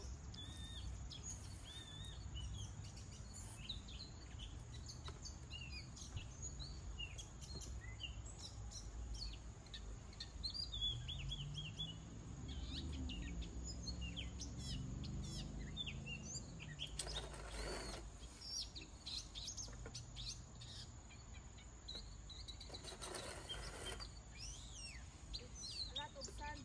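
Small birds chirping and twittering in many short, quick calls over a low steady outdoor rumble, with two brief noises about seventeen and twenty-three seconds in.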